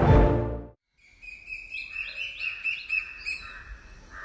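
Theme music fades out within the first second, and after a brief silence birds start chirping: many quick, repeated high chirps over a steady high whistling note.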